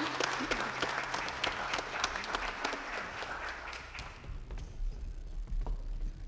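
Church congregation applauding, a dense patter of many hands that fades out after about four seconds, leaving a few last scattered claps.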